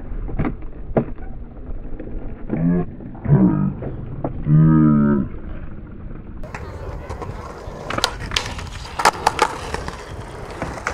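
Skateboard rolling on concrete at a skatepark, with sharp clacks of the board and wheels striking the ground, several in quick succession near the end. Two wordless yells come near the middle, the second drawn out for about a second.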